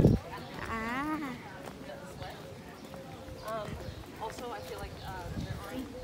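Voices of people talking close by, with footsteps on stone paving.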